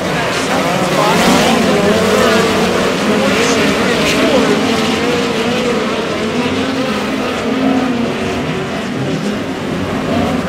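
Several dirt-track midget race cars running together in a pack. Their engine notes overlap and rise and fall as the drivers get on and off the throttle through the turns.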